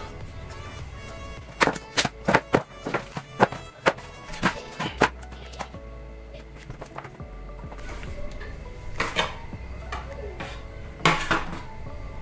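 Raw chicken pieces dropped one after another into a plastic basin: a quick run of knocks and thuds in the first few seconds, with a few more knocks later, over quiet background music.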